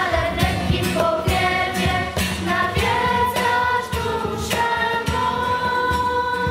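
A choir of girls singing a church song together into a microphone, holding long notes, over a regular beat.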